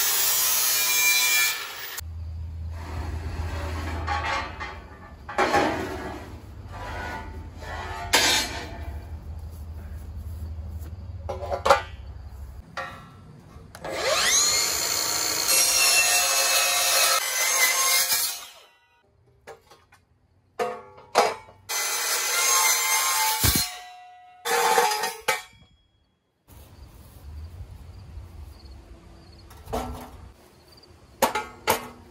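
Power tools working steel I-beams in short bursts: an angle grinder's disc buffing the beam at the start, then, about halfway through, a cordless circular saw spinning up with a rising whine and cutting through the steel beam for a few seconds, followed by more short cuts.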